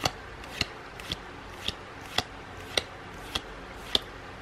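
Trading cards being flicked one at a time off a hand-held stack, a short sharp snap about every half second, eight in all.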